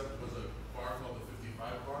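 Quiet talking in a man's voice.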